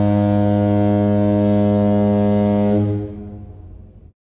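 A loud, deep horn blast held at one steady pitch, like a foghorn sound effect. It drops off about three seconds in and fades out just before the end.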